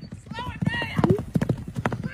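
A quick, uneven run of clip-clopping knocks, several a second, with a voice over them.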